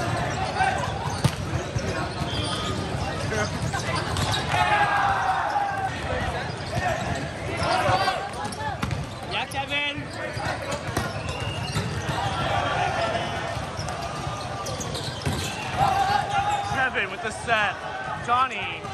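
Din of volleyball play in a large, crowded sports hall: many voices calling and chattering, balls being struck and bouncing, and sneakers squeaking sharply on the court floor a few times, most clearly about ten seconds in and near the end.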